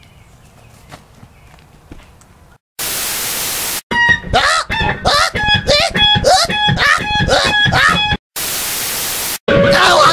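Faint outdoor background with two soft clicks, then an edited sequence: a burst of flat static hiss lasting about a second, about four seconds of a loud, heavily distorted, pitched voice with no clear words, and a second burst of static hiss before a loud voice cuts in.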